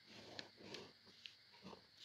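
Near silence with a few faint, short ticks and soft rustles from a felt-tip marker drawing lines on paper.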